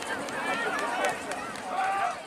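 Several voices of players and spectators at a soccer match, shouting and talking over one another at a distance, with a few short sharp ticks.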